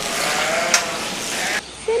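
A sheep bleating faintly over a steady hiss, with one sharp click about midway.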